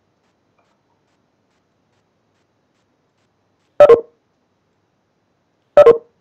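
Two short electronic alert tones from a video-meeting app, about two seconds apart, each a brief chord of a few pitches: participant notification chimes.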